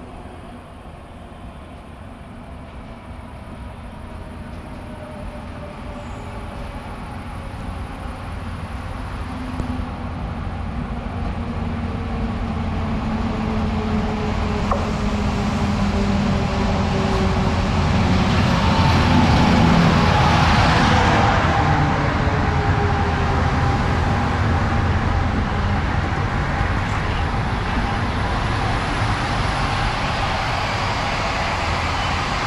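A locomotive-hauled passenger train pulling into a station. The locomotive's engine grows steadily louder as it approaches and is loudest as it passes, about two-thirds of the way in, its note falling slightly. The coaches then roll past with a steady rumble.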